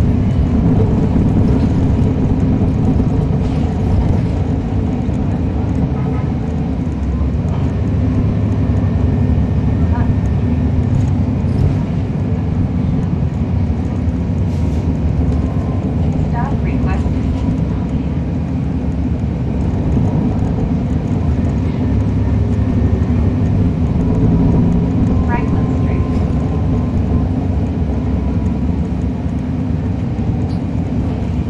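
Cummins ISL9 diesel engine of a 2011 NABI 416.15 (40-SFW) transit bus with a ZF Ecolife six-speed automatic, heard from on board, running steadily with a loud low drone.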